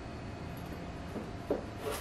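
Kitchen knife cutting fresh turmeric and ginger root on a plastic cutting board: a faint steady background, then three short knocks of the blade on the board in the second half.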